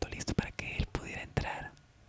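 Soft, whispered-sounding speech that breaks off about three-quarters of the way in, followed by a quieter pause.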